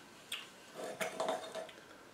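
A quiet pause in a man's speech: a drawn-out, hesitant "a" and two faint short clicks.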